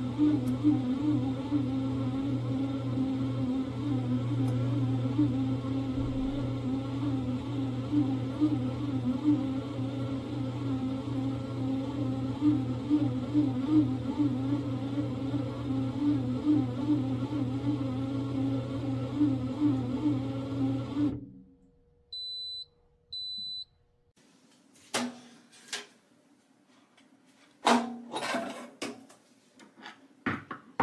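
Bread machine motor running with a steady, slightly wavering hum while it turns its kneading paddle; it stops about two-thirds of the way through. Two short high beeps follow, then a few sharp knocks and clatters as the metal bread pan is handled and lifted out.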